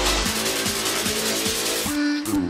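Electronic dance background music with a steady beat of about four hits a second; the deep bass drops away shortly after the start.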